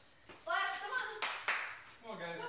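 An excited, high-pitched squeal, then two hand claps a quarter second apart, the second the louder.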